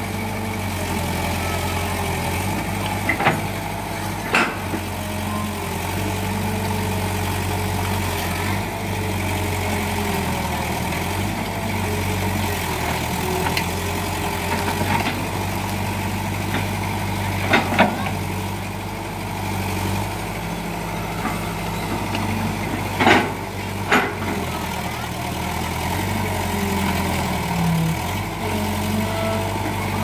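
Kobelco Yutani SK045 excavator's diesel engine running steadily, its pitch shifting as the hydraulics take load. Several sharp snaps and knocks, two of them close together, come as the bucket works through brush and small trees.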